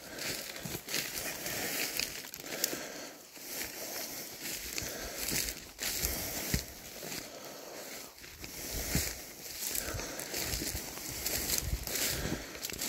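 Footsteps pushing through dry, dead bracken and undergrowth, the brittle stems crackling and rustling in an irregular run of crunches.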